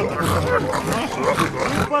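A crowd of men shouting and cheering together, many voices at once, like a rally roar. It breaks off just before the end.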